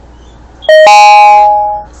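Mobile phone notification chime, loud: a short note and then a longer ringing note that fades out over about a second.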